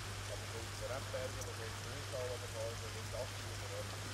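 Quiet background of a steady low hum and faint hiss, with faint, indistinct voices wavering through it.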